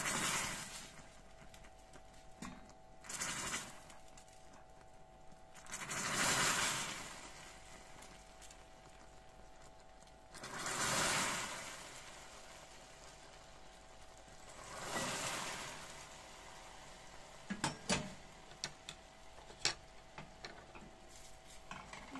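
Hot water poured in several portions into caramelized sugar in a stainless steel saucepan, the molten caramel sizzling and spitting in five surges of a second or two each as the water boils up on contact: the stage of making a burnt-sugar syrup. A few sharp clicks near the end.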